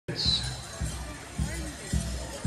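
A large pow wow drum struck in unison by a seated group of drummers: four slow, even, deep beats about two-thirds of a second apart, opening a song.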